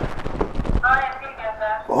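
Clip-on lavalier microphone being handled and fastened to a shirt: a quick run of soft knocks and rubbing on the mic, then a quieter voice speaking briefly.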